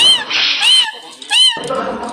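Pet parakeet screeching: three loud, repeated calls about two-thirds of a second apart, each rising and then falling in pitch.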